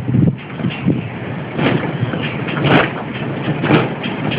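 Sails of a working Dutch smock windmill sweeping past close by, a swish about once a second over a steady low rumble of wind and the turning mill.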